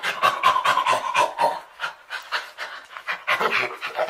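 Apelike creature vocalisation built from primate calls: rapid, breathy panting grunts at about six a second, with a held pitched note through the first second and a half.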